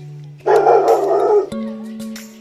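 Rottweiler barking: one loud bark, about a second long, about half a second in, over background music.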